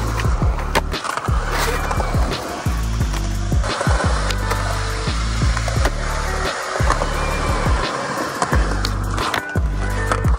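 Skateboard wheels rolling on concrete, with several sharp clacks of the board popping and landing, under music with a heavy bass line.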